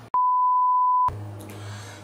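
An edited-in censor bleep: a single steady high-pitched beep lasting about a second, with the original audio muted beneath it. After it cuts off, a faint low steady hum of room tone remains.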